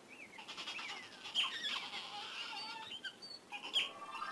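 An otter chirping and squeaking: a quick run of short, high calls that glide up and down, busiest about a second and a half in, with a louder squeal near the end.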